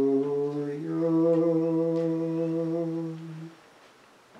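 A man's solo voice chanting unaccompanied in plainchant, held notes stepping slightly upward, the last held steady for over two seconds and ending about three and a half seconds in.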